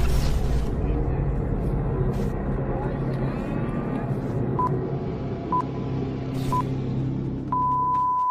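Intro sound design: a steady low rumble, then three short electronic beeps about a second apart and a longer beep of the same pitch near the end, in the pattern of a start countdown.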